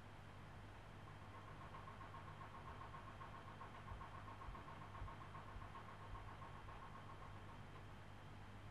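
Faint steady hum of a clothes dryer running in the background, with a faint pulsing high-pitched tone from about a second in until near the end.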